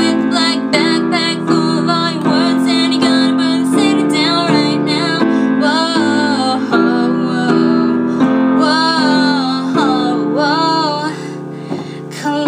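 A woman singing a pop-punk song in an acoustic arrangement, backed by held piano chords. Her voice wavers and bends across the phrases, and both ease off briefly near the end.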